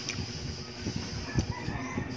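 A rooster crowing in the background over close-up eating sounds: chewing and mouth noises, with a sharp click about halfway through.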